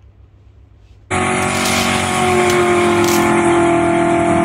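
Race-car engine sound effect cutting in suddenly about a second in, holding a loud, steady note that sinks slightly in pitch.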